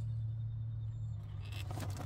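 RC rock crawler's electric motor and drivetrain running at crawl speed, a steady low hum with a few faint ticks, and a short burst of noise near the end.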